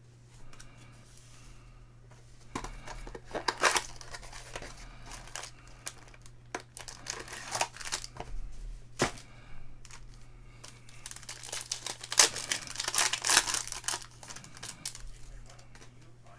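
Foil trading-card pack wrapper being torn open and crinkled, with cards sliding and shuffling in the hands. The rustling comes in irregular bursts, busiest a few seconds before the end, with one sharp tap about halfway through.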